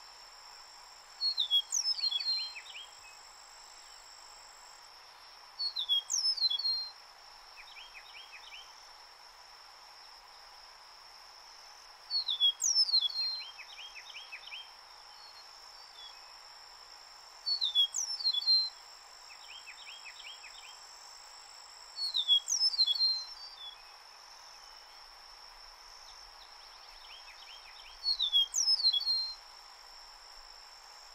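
Eastern meadowlark singing, repeating its short song six times at roughly five-second intervals; each song is a quick phrase of clear, slurred whistles that fall in pitch. Behind it runs a steady high-pitched insect drone.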